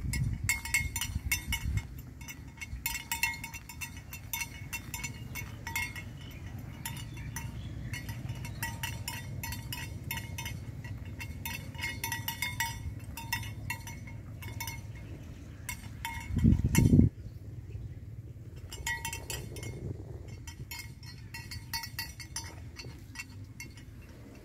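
Small bells on grazing water buffalo clinking irregularly as the animals move, over a low, steady wind rumble. A brief, loud low rumble of wind on the microphone about two-thirds of the way through.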